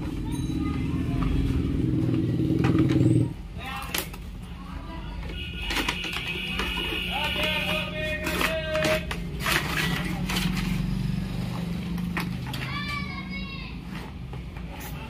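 Cardboard toy box being handled and opened, with scattered rustles and taps, under indistinct background voices. A loud low rumble stops suddenly about three seconds in.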